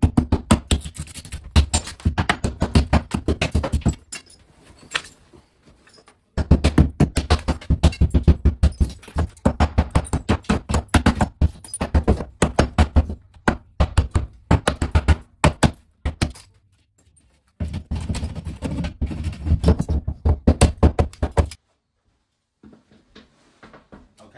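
Hammer striking a recessed ceramic wall fixture over and over, several blows a second in runs of a few seconds with short pauses, smashing the ceramic and its setting out of the wall. The blows stop a couple of seconds before the end.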